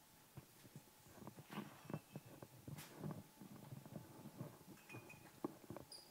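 Faint room noise of people moving about: scattered soft knocks, shuffles and rustles, busiest in the middle, with one sharper knock near the end.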